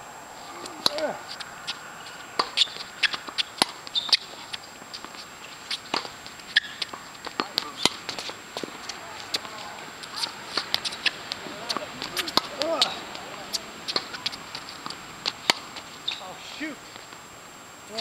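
Tennis being played on an outdoor hard court: the sharp pops of racket strings striking the ball and the ball bouncing on the court, irregular and at times several in quick succession, with scuffing footsteps of the players.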